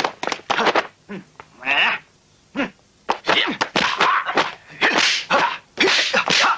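Kung fu film fight sound effects: a quick series of punch and kick impact hits with fighters' cries. There is a short cry about two seconds in and a brief lull after it, then a dense run of blows.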